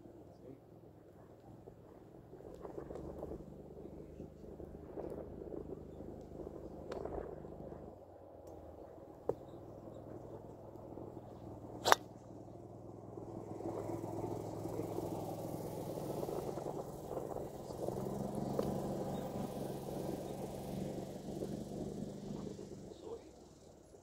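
A golf driver striking a teed ball: one sharp, loud crack about twelve seconds in. Under it runs a steady low hum.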